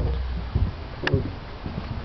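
Footsteps and camera handling noise from someone walking outdoors with the camera, with a low rumble at first and a sharp click about a second in.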